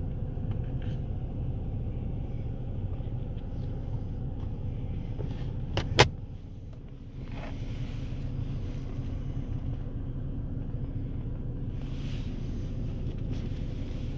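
Honda Civic's engine idling steadily, heard from inside the cabin, with one sharp knock about six seconds in.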